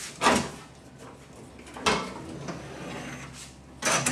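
1951 Crosley's hood latch being worked and the hood lifted open: three short clunks, about a second and a half apart.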